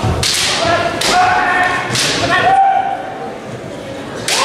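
Bamboo shinai strikes in a kendo bout: three sharp cracks about a second apart, each followed by a fighter's long, drawn-out kiai shout. Quieter from about two and a half seconds in.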